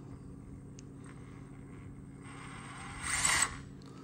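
Axial Capra UTB18 crawler's Furitek brushless motor and geared drivetrain spinning with no wheels on under light throttle, a short whirring burst that rises and falls about three seconds in.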